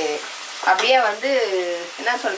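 Food sizzling as it fries in a pan while being stirred, under a woman's voice talking from about half a second in until near the end.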